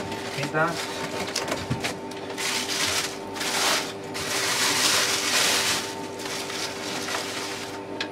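Plastic packaging bags and wrapping rustling and crinkling as a figure piece is pulled out of its box and unwrapped, with two long stretches of crinkling in the middle.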